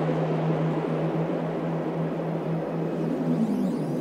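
Psychedelic trance in a beatless passage: a sustained low synth drone under a noisy wash, with no kick drum. Near the end the low tone bends in pitch and swirling high sweeps come in.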